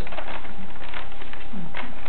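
Light rustling and crinkling of paper cones being handled and fitted together, over a steady low background hum.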